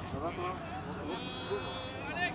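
Distant voices of people on the pitch and touchline, then a long, held shout starting about a second in.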